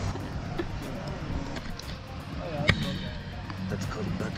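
A steady low outdoor rumble under faint voices, with one sharp click about two-thirds of the way through.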